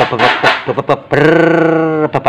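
A man's voice imitating the 'mblebek' sound of a fuel-injected scooter engine stumbling: a few quick sputtering syllables, then a long held droning tone from about a second in. This is a fuel-system complaint rather than an ignition misfire.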